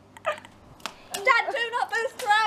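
High, excited voices that start about a second in, after a quiet moment broken by a sharp click.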